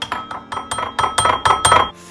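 A spoon clinking rapidly against a bowl, tapping spoonfuls of cornstarch into it: a quick run of sharp clinks, about five a second, over a held ringing tone.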